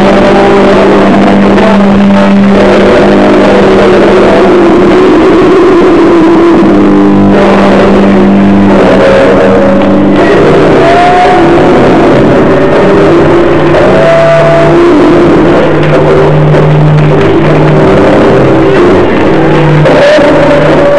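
Experimental noise-rock band playing live, loud and overloaded on a small camera microphone, with the bass guitar loudest. A held bass note fills the first half, then lower bass notes take over, and short sliding pitches rise above it about eleven and fourteen seconds in.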